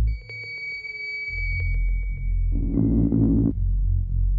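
Blippoo Box and Benjozeit analogue noise synthesizers playing together. A deep drone cuts out, leaving steady high whistling tones and a lower tone that sinks slightly, spattered with clicks. After about a second and a half a deep buzzing drone comes back in.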